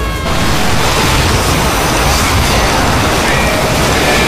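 Loud, heavily distorted, noise-like wall of layered audio that cuts in about a quarter second in and holds steady, burying any music or voice under it.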